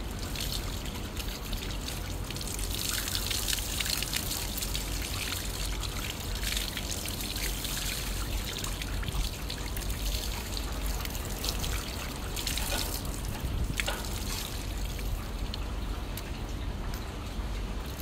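Water running from a plastic garden hose, trickling and splashing steadily on and off the hands and onto concrete.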